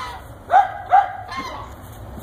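Belgian Malinois barking twice in quick succession, about half a second apart, while playing rough with a chicken, followed by a fainter third call.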